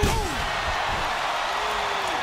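A loud single slam as a heavy wrestler's body hits the wrestling ring canvas right at the start, followed by the steady noise of a large arena crowd.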